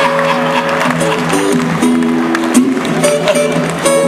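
Acoustic guitars played together live, with long held notes that change every second or so over a steady low note.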